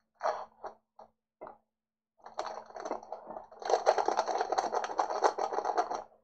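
Foil wrapper of a football trading-card pack crinkling as it is opened by hand: a few short rustles, then a continuous crackling crinkle from about two seconds in that grows denser and louder from nearly four seconds in.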